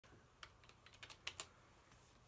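Near silence broken by a quick run of faint clicks and taps, about eight in a little over a second, like buttons or keys being pressed.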